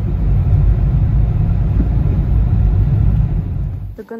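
Steady low rumble of a car driving, heard from inside the cabin, loud throughout and cutting off abruptly at the end.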